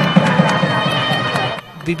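Wedding music: a reed pipe holding high notes over a steady drum beat, with a crowd behind. It cuts off sharply about one and a half seconds in.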